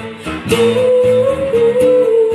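A woman sings to a strummed acoustic guitar. After a short break, she holds one long note from about half a second in.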